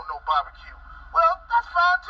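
A man talking through a laptop's small speaker, thin and tinny with no bass, in short excited bursts with gaps between them.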